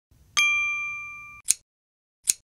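Notification-bell ding sound effect: one chime about half a second in that rings out and fades over about a second, then a sharp mouse click.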